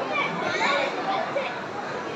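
Overlapping chatter of many children's voices from a seated school audience, no single voice standing out.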